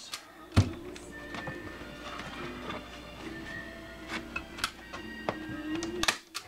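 Faint background music with one sharp snap of a hand staple gun firing a staple into a motorcycle seat pan about half a second in, followed by a few lighter clicks.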